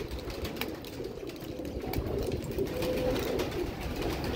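Caged pigeons cooing, low and wavering, with a few faint clicks.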